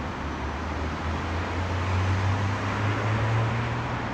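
Road traffic: a passing vehicle's low engine hum grows louder and rises slightly in pitch over a steady traffic hiss.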